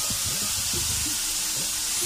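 Shredded chicken sizzling in melted butter in a pan, a steady hiss.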